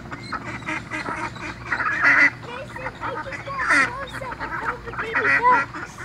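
Birds calling at a pond: a series of short, pitched calls, loudest about two, four and five and a half seconds in, from the ducks and flamingos gathered there.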